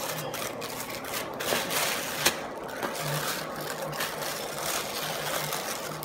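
Thin plastic shopping bag crinkling and rustling under hands pressing and rounding a disc of corn arepa dough, with a few sharper crackles. A faint low hum sits underneath.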